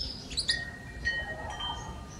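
Small birds chirping in the background: a couple of quick high chirps about half a second in, then a few thin, short whistled notes.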